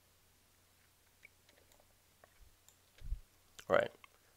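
Faint computer-mouse clicks over quiet room tone. Near the end comes a dull low thump, then a short mouth or breath sound from the narrator.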